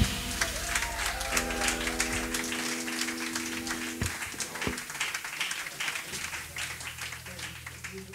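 Audience applauding at the end of a live soul-jazz band's number, with a few held instrument notes ringing under the clapping. The applause slowly dies away and the sound fades out near the end.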